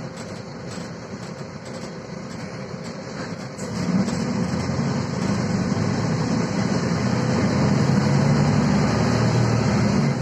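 Interior of a Volvo 7000A articulated city bus under way: the diesel engine and running noise step up about four seconds in as the bus accelerates, then hold a louder, steady drone.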